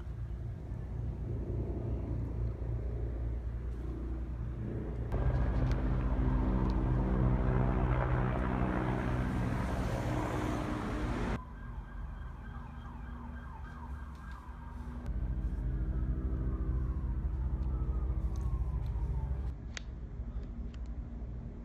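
A steady low engine hum, with faint siren-like wails gliding in pitch; the sound changes abruptly several times, and from about five to eleven seconds in it is louder and carries a wide hiss.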